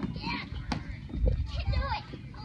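Children's voices calling out, over a low rumble.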